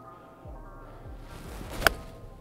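Golf iron swung and striking the ball: a short rising swish, then one sharp click of club on ball near the end. Quiet background music plays underneath.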